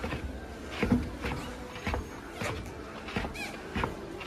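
Sneakered footsteps walking down the grooved metal steps of a stopped Schindler escalator, about two steps a second.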